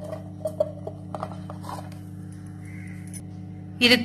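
Cut bottle gourd pieces dropped by hand into a stainless-steel mixer-grinder jar: a few light taps and clinks in the first second and a half, over a steady low hum.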